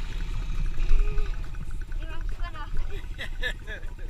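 Yamaha TT-R110 dirt bike's small air-cooled four-stroke single running, heard as a low pulsing rumble from the bike-mounted camera. Voices come in briefly in the second half.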